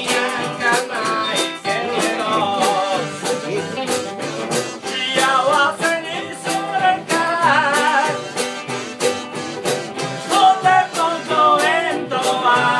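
Jug band music played live: a Gibson UB-1 banjo ukulele and a Gretsch New Yorker archtop guitar strummed to a steady beat, a jug blown for the bass, and a man singing the melody.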